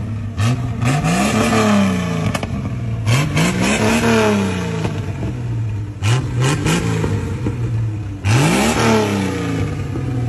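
Lifted Jeep Cherokee XJ's engine revved repeatedly while standing still: about six throttle blips, some short and some held for over a second, each rising in pitch and falling back to idle.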